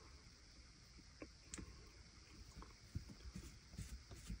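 Near silence with a few faint, small clicks: a small screwdriver turning a screw into a laptop's CPU heatsink.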